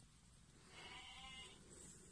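A sheep bleating once, faint and short, a call of under a second starting about a third of the way in.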